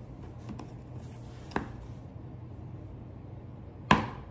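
Light taps on a wooden tabletop, one about half a second in and a sharper one about a second and a half in, then a single loud, sharp knock near the end, over a low steady hum.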